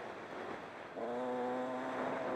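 Dirt bike's single-cylinder engine heard from the rider's helmet. For the first second it is mostly wind rush, then about a second in the engine comes back on throttle and holds a steady, even pitch.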